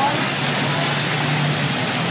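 Steady rush of running water in an animal pool, with a low steady hum under it.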